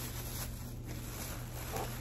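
Plastic packaging rustling faintly as items are handled, over a steady low hum.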